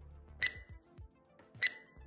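Two short, high electronic dings about a second apart, like a timer's countdown chime, in a lull in the background music.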